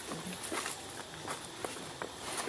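Scattered light crackling and rustling of steps through dry leaf litter.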